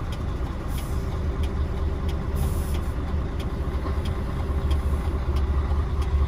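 Mercedes-Benz Axor truck's diesel engine idling, heard from inside the cab as a steady low drone, with a few faint clicks over it.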